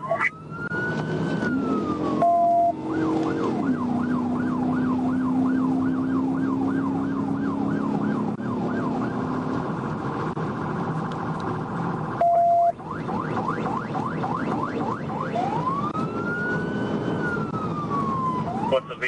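Police car siren on a pursuing Dodge Charger patrol car, heard from inside the car over engine and road noise. It cycles from a slow rising-and-falling wail to a fast yelp of about three or four sweeps a second and back to the wail, with a short beep at each switch, about two seconds in and again about twelve seconds in.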